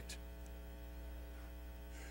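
Faint, steady electrical mains hum: a low drone with a row of steady overtones above it, unchanging throughout.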